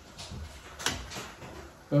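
Metal ladle scraping and clicking against a wok as sauce is scooped out for tasting: a few short, sharp knocks, the loudest just before a second in.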